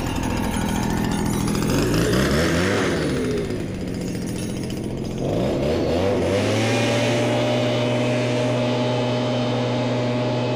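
Small engine of a petrol-powered mister revving up and dropping back, then revving up again about halfway through and holding a steady high speed as it blows insecticide mist.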